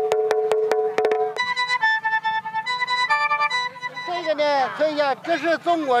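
Chinese tang drum struck quickly with wooden sticks, a rapid run of sharp hits over a ringing tone for about the first second. A wind instrument then plays a short phrase of changing held notes, and a child speaks near the end.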